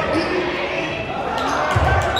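Live basketball game in a gym: players and spectators calling out over one another, with a ball bouncing on the court near the end.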